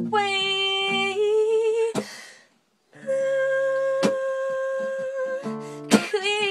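A woman sings long wordless held notes over acoustic guitar. The first note ends about two seconds in, with vibrato at its close; after a brief silence a second, higher note is held for about two seconds, and guitar chords are strummed near the end.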